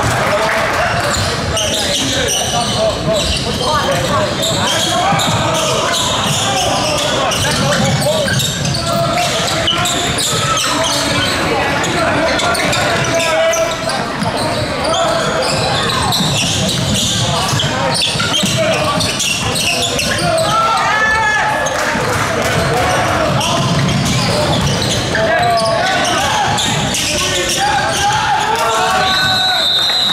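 Basketball game in a large hall: a ball bouncing on the court among many overlapping voices of players and spectators, with a short high steady tone near the end.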